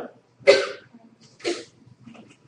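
A person coughing twice, a loud cough about half a second in and a quieter one about a second later.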